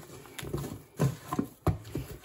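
Hands kneading butter into soft, sticky brioche dough in a wooden bowl: wet squelches and slaps, with the sharpest slaps about a second in and again near the end.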